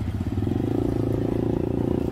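Small motorcycle engine running at a steady speed, an even hum with a fast, regular pulse.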